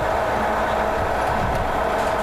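An engine running steadily: an even drone with a constant hum, unchanging throughout.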